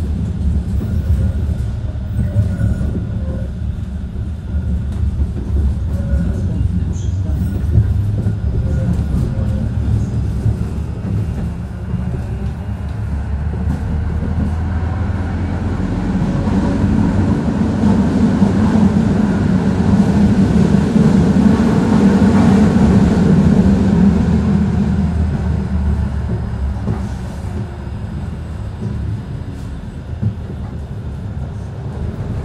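Moderus Beta MF19AC tram heard from inside the passenger saloon while running along its track: a continuous rumble of wheels and running gear. It builds to its loudest about halfway through and then eases off toward the end.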